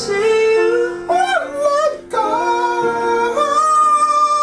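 Music: a pop ballad cover with a male singer holding long, high notes that bend in pitch over soft guitar accompaniment, with a brief gap about two seconds in before a long held note.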